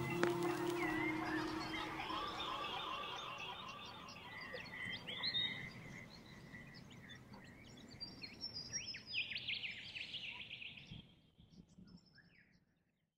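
The last of the music dies away, leaving a chorus of wild birds calling and chirping, with a quick run of rapid chirps about nine seconds in; it all fades out about a second before the end.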